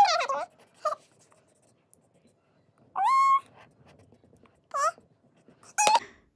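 Three short, high-pitched cries that rise in pitch, about three seconds in, near five seconds and just before the end.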